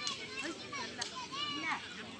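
Boys' voices calling and shouting during a football game: several short, high-pitched shouts overlapping.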